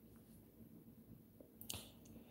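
Near silence: room tone, with one short, sharp click near the end.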